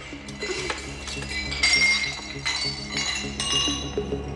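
Glassy ringing clinks: four or five separate strikes about a second apart, each leaving high tones ringing, over a steady low hum.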